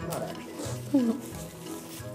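Light background music under a TV edit, with a short voice-like sound about a second in.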